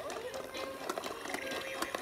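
Plastic toy balls and a plastic ball-popper toy being handled, making a quick scatter of light clicks and taps.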